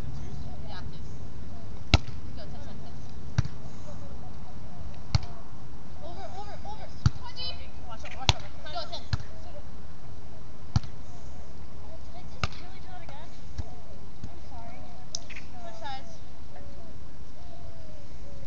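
A volleyball being struck by players' hands and forearms during a rally: about eight sharp slaps a second or two apart, fading out after the middle. Faint voices call in the background.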